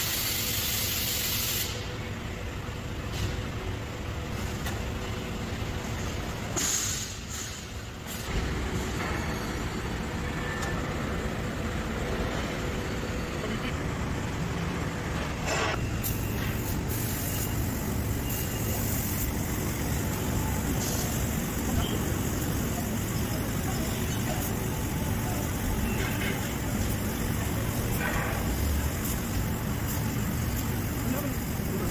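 CNC laser cutting machine cutting a stainless steel sheet: a steady rushing machine noise with hiss, after a short bright noise in the first couple of seconds.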